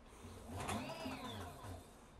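Rear-wheel 8,000 W brushless hub motor of an electric motorcycle, driven by a Kelly controller, whining as the wheel spins up under throttle. The pitch rises to a peak about a second in, then falls as the throttle is released and regenerative braking slows the wheel.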